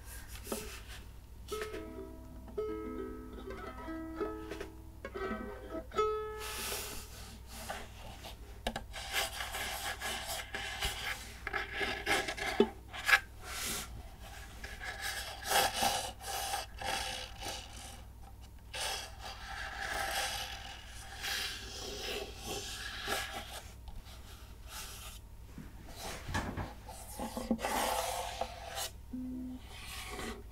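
A few ukulele strings plucked softly in the first seconds, then fingers rubbing and scratching over the UMA ukulele's body for the rest.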